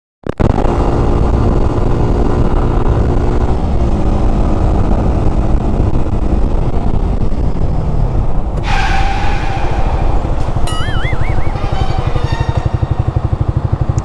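Sport motorcycle engine running while riding, heard from a bike-mounted camera with wind and road noise; near the end it drops to low revs with a steady pulsing as the bike slows.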